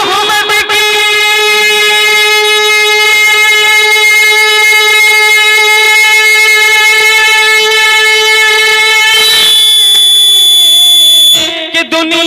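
A man's voice holding one long, steady sung note into a handheld microphone for about eight seconds in naat recitation. Then a shriller, higher tone takes over for about two seconds before a brief break and the singing wavers on again at the end.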